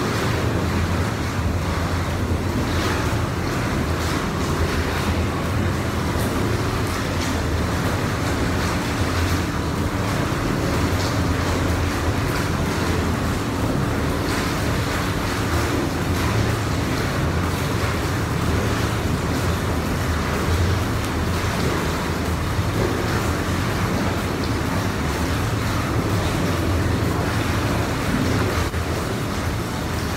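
Steady rushing of water in a spa pool, with a low rumble underneath.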